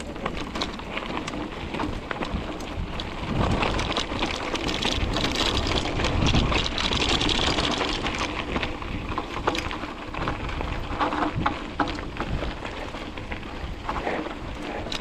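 Mountain bike rolling fast down a loose gravel track: tyres crunching over stones, with a steady stream of clicks and rattles, louder for a few seconds in the middle.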